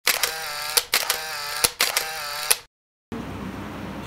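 Camera shutter clicks, about five sharp ones spaced under a second apart, over a held pitched tone. It cuts off suddenly, and after a short gap a steady hiss with a low hum follows.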